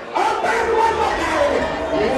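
Nightclub crowd shouting and cheering, starting loudly just after a brief lull, with a low bass beat underneath.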